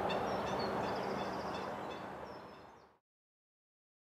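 Lakeside outdoor background with faint bird calls, slowly fading out over about three seconds into complete silence.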